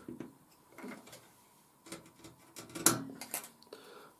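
Stanley knife cutting the point off a wooden cocktail stick: a few faint clicks and scrapes, with one sharper click about three seconds in.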